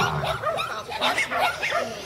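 A dog barking several times in short calls, with voices in the background.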